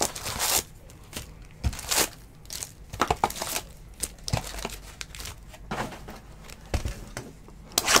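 Wrappers of sealed trading-card packs crinkling as a hand pulls the packs out of the box, in irregular crackles and rustles with a few sharper clicks.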